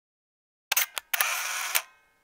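Camera shutter sound effect: two sharp clicks, then a short burst of noise lasting under a second, with a faint ringing tail.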